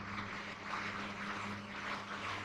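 Whiteboard marker scratching across the board as words are written, over a steady low electrical hum.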